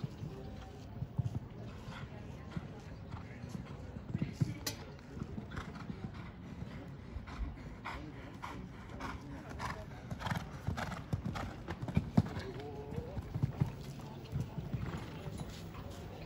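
A Holsteiner mare's hooves cantering on sand arena footing: a steady run of dull hoofbeats, with one louder thud about twelve seconds in.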